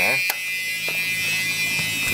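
A car's steady, high-pitched electric warning buzzer sounding continuously with the door open, with a single click about a third of a second in.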